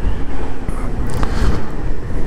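Yamaha XJ6 motorcycle's 600 cc inline-four engine running as the bike rides along, mixed with a steady rush of wind over the microphone.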